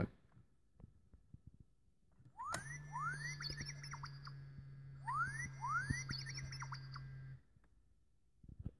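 R2-D2 beeps and rising whistles played through the small speaker of a hacked R2-D2 sweet dispenser, in two bursts about two seconds apart. Under them runs a steady low hum that starts with a click and cuts off suddenly about seven seconds in.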